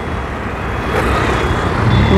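Road traffic: motorcycles and scooters passing on a city road, with a car coming past close by near the end, its rumble rising.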